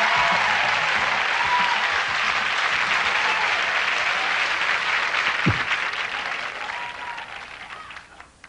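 Audience applauding, with a single low thump just after five seconds. The applause dies away over the last two seconds.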